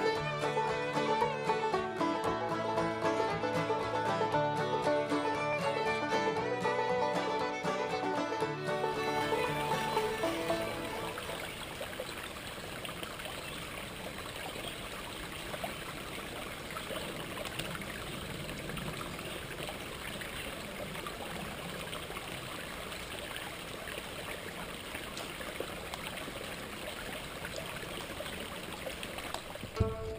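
Background music for about the first ten seconds, then it gives way to the steady rush of a small rocky stream running over stones.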